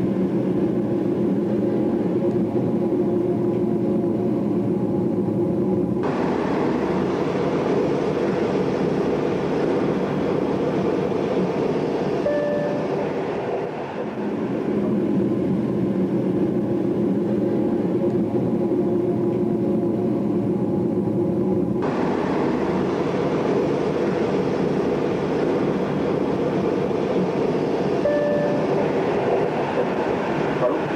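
Steady rumble of a moving train, heard from inside a carriage on an old camcorder's built-in microphone. The sound turns suddenly hissier and brighter twice, and a brief faint squeal comes twice.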